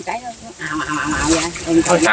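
People talking in low, indistinct voices, with a brief splash or slosh of water about halfway through.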